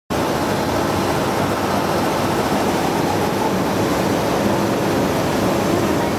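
Automatic vial packing machine running: a loud, steady, even noise with no distinct knocks or rhythm.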